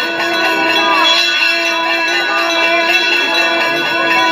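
Temple bells ringing continuously for the arati (flame offering), layered with steady held tones.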